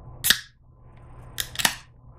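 Aluminium soft-drink can opened by its pull tab: a sharp crack about a quarter second in, then two more cracks close together near the end as the seal breaks, with a short fizzing hiss of carbonation.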